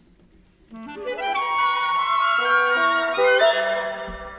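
Contemporary classical orchestral music: after a near-silent pause, instruments enter under a second in with a rising run of notes and build to a loud, sustained chord that eases off near the end.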